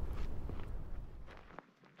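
Footsteps on dry, stony ground over a low rumble. The rumble cuts out about one and a half seconds in, leaving a few faint steps.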